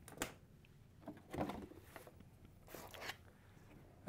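A few faint, short rustles and knocks of welding cables and a gas hose being handled on a tabletop.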